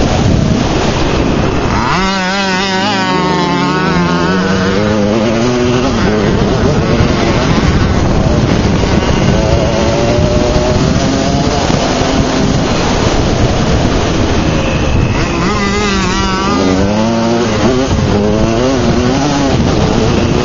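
Dirt bike engine running close by over heavy wind and ground rumble. Its pitch rises and wavers with the throttle, about two seconds in and again about fifteen seconds in.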